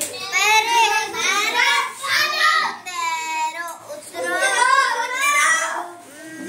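A young girl singing a children's rhyme aloud in a sing-song voice, phrase by phrase, with short breaths between the lines.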